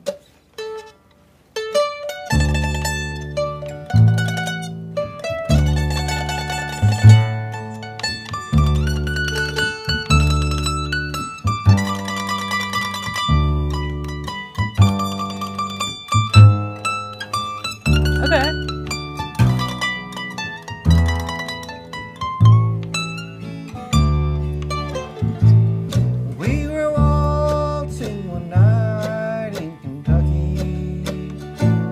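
A mandolin, an acoustic guitar and an upright bass start playing an instrumental bluegrass tune about two seconds in, after a brief pause. The mandolin carries the melody over steady plucked bass notes and guitar strumming.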